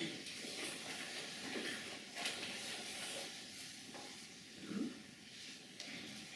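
Quiet lecture-room background: a steady hiss with scattered small clicks and rustles, and a brief low voice-like sound a little before the end.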